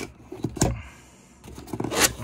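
Cardboard box end flap being pried open by hand, with a few short scrapes and clicks of card about half a second in and again near the end.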